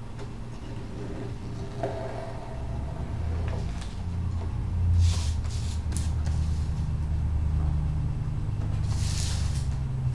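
Sheet of paper rustling and sliding on a tabletop as it is folded and creased, with two short rustles about halfway and near the end. A low steady rumble builds underneath from a couple of seconds in.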